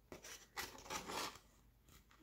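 Paper scissors cutting through paper, a few short snips in the first second and a half.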